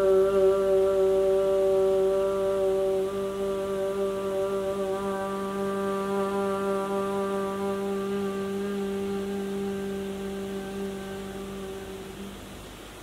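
A woman's voice chanting one long Om on a steady pitch, slowly fading and ending near the end.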